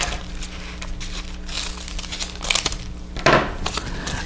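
Kraft paper crinkling in a few short, irregular rustles as it is handled.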